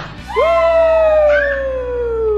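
A person's long, drawn-out vocal cry starting about half a second in: one held note that slowly falls in pitch for over two seconds, with a brief second voice over it near the middle.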